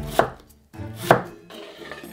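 Chef's knife chopping red onion on a wooden cutting board: two loud chops about a second apart.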